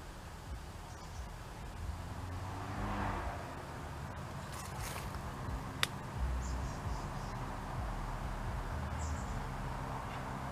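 Quiet outdoor ambience: a steady low rumble, a few faint high chirps, and a single sharp click about six seconds in.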